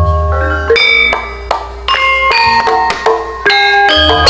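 Gamelan ensemble playing: bronze metallophones struck in a brisk run of ringing notes, with a deep low stroke at the start and another just before the end.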